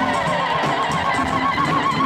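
Live band music: a high note held with a fast, even vibrato over a low bass-and-drum groove.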